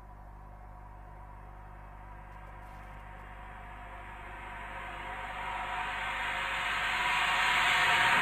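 A white-noise riser in an edit's soundtrack, swelling steadily louder over a faint sustained low drone as it builds toward a transition.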